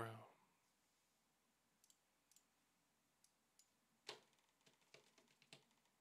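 Near silence with a few faint computer mouse clicks: a clearer click about four seconds in, then several quick light ones.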